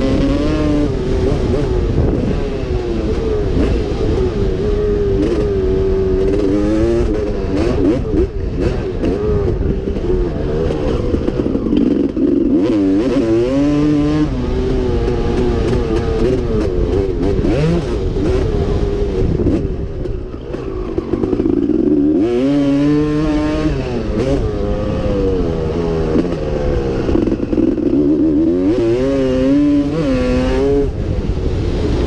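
Two-stroke engine of a vintage pre-1990 Yamaha YZ250 motocross bike under riding load, heard from the rider's helmet. It revs up and falls back over and over as the throttle is opened and shut, with short drops off the throttle about 8, 13 and 20 seconds in.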